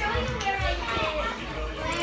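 Children's voices, talking and playing, with indistinct chatter throughout.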